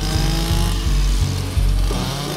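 Stihl petrol brushcutter running as it cuts through cannabis plants, mixed with background music that has a bass line changing in steps.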